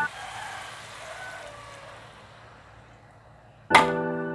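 A glass of water poured over stir-frying greens in a pan, a hiss that fades away over the first two to three seconds. Piano background music comes back with a loud chord near the end.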